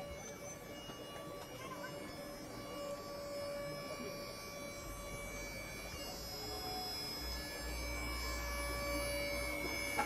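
Leguan 160 spider lift's power unit humming steadily as the boom is lowered, deepening and growing louder in the second half.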